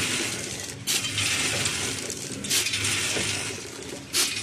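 Automatic popcorn packaging machine running, with a continuous crisp rattle of popcorn. A sharper, louder burst comes twice, about every second and a half to two seconds, in step with the machine's cycle.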